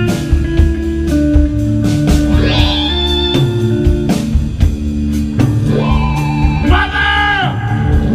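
Live rock band playing an instrumental psychedelic passage: electric guitar, Vox Continental combo organ, bass guitar and drums, with a few bent notes rising and falling over sustained organ chords.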